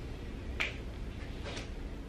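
A sharp click from a pen being handled at a desk, with a fainter one about a second later, over a steady low room hum.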